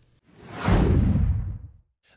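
Whoosh transition sound effect: a single rush of noise that sweeps downward in pitch and fades out over about a second and a half.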